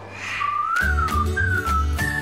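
Cartoon logo jingle: a whistle-like melody that glides up and then down in two short phrases over deep bass notes, leading into a held high note at the end.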